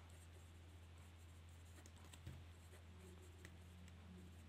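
Near silence: a ballpoint pen writing faintly on paper, over a steady low hum.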